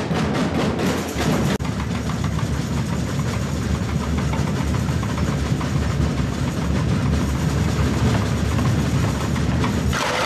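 Samba percussion band drumming a dense, continuous roll, heaviest in the bass drums. Separate strikes are audible for the first second or so, then they merge into an even rumble.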